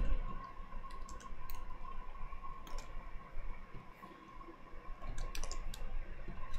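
Computer keyboard keys clicking: a few separate keystrokes spaced out, with a cluster near the end, over a faint steady tone.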